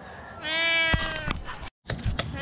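A domestic cat stranded high up a tree meowing: one long, drawn-out meow starting about half a second in and lasting nearly a second, with a couple of light clicks.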